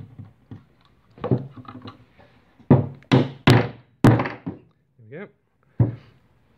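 Four sharp knocks in quick succession, then another near the end, as a knurled hardwood dowel is driven down into an enlarged bridge-pin hole in a piano's wooden bass bridge to plug it.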